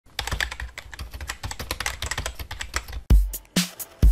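Rapid, dense clicking of keyboard typing for about three seconds. Then a loud, deep bass drum hit starts an electronic music beat.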